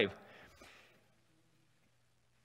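A pause in a man's speech: his last word trails off in the room's echo at the start, then near silence with only a faint low hum.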